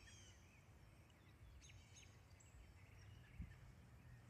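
Near-silent woodland ambience with a low rumble and scattered faint bird chirps, a small group of them about halfway through. A brief soft thump about three and a half seconds in.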